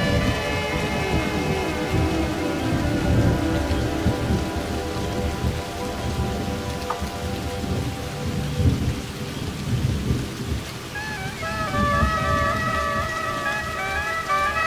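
Thunder rumbling on and off over steady heavy rain. A woodwind melody fades out in the first few seconds and comes back about eleven seconds in.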